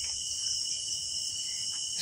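A steady, unbroken chorus of night-singing insects such as crickets, several high-pitched trills layered together.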